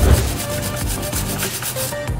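Steel wire brush scrubbing the metal of a car's front suspension strut in rapid back-and-forth strokes, cleaning off dirt and rust.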